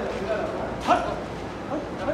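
Men's voices in the background, with one short, sharp, loud call about a second in.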